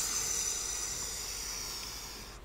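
A long, hissing exhale blown out close to the microphone, fading slowly.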